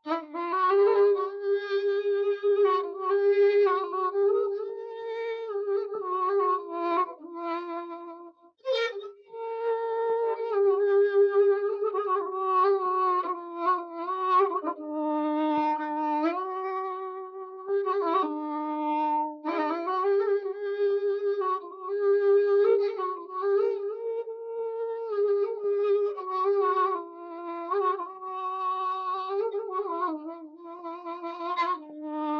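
A solo violin playing a slow melody in a single line of held notes, with a short break between phrases about eight and a half seconds in.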